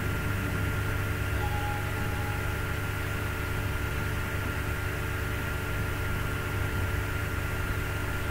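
Steady background hum and hiss with a few constant tones, the live microphone's room noise, unchanged throughout; a short faint tone sounds about a second and a half in.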